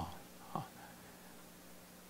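Quiet room tone with a faint steady low hum, broken by the end of a spoken syllable at the start and one short vocal sound from a man about half a second in.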